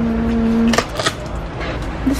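A woman's voice humming a short 'mm', followed about a second in by two quick sharp clicks, over a steady low background rumble.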